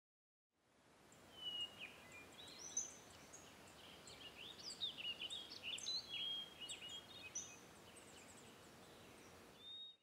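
Several songbirds chirping and whistling over a faint steady hiss of field ambience, starting about a second in.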